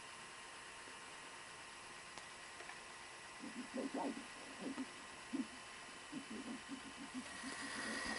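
Faint playback audio from a Sony SL-5000 Betamax VCR, heard over a steady hiss, coming through slow and low in pitch in broken fragments that start and stop from about three seconds in. The capstan motor is running too slowly and its servo cannot lock the speed, so the tape drags, stops and goes.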